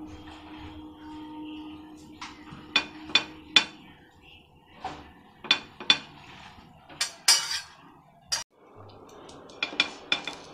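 A metal butter knife clicking and scraping against a non-stick frying pan and the bread as butter is spread on a sandwich: about a dozen sharp, separate taps scattered through, with a brief scrape about seven seconds in.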